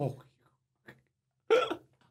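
People laughing: a falling laugh fades out right at the start, and after a short pause comes one brief burst of laughter about one and a half seconds in.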